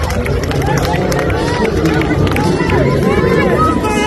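Basketball shoes squeaking in quick short chirps on a hardwood court, over the steady noise and voices of an arena crowd.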